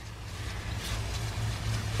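Gallon pump garden sprayer's wand hissing as it sprays a fine mist onto cucumber vines and leaves, growing slightly louder, over a steady low hum.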